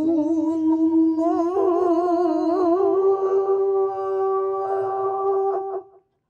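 A single man's voice chanting an Arabic prayer in a melodic, ornamented style. It winds through a wavering run, then holds one long steady note that cuts off suddenly near the end.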